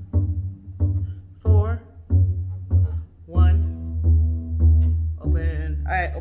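Double bass playing a slow line of single low notes, about nine of them, each a little over half a second apart, the last few held longer. A voice sings or calls along over the notes.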